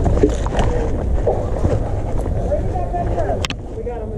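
Low, steady rumble of wind and movement on a body-worn camera's microphone as the wearer walks, with a single sharp click about three and a half seconds in.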